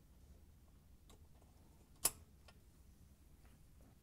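A plastic dish rack stop snapping onto the end of a dishwasher's metal rack slide: one sharp click about two seconds in, with a few fainter ticks of plastic and metal being handled around it.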